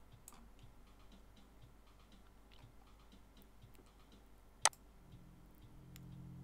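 Faint ticking and clicking, with one sharp click about four and a half seconds in, typical of a computer mouse being clicked while working software controls. A faint low hum comes in near the end.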